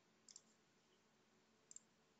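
Near silence with two faint computer-mouse clicks, each a quick double click, about a third of a second in and again near the end.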